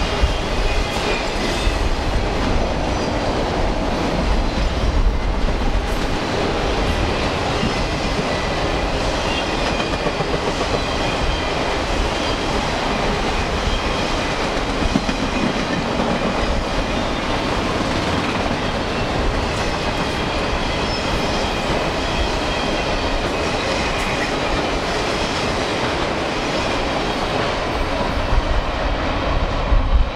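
Freight train of enclosed autorack cars rolling past close by: a steady, continuous rumble and clatter of steel wheels on the rails, with thin high squealing tones from the wheels over it.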